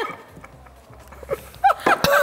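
A man's few short, high-pitched whimpers in the second half, a reaction to the burn of a mouthful of wasabi.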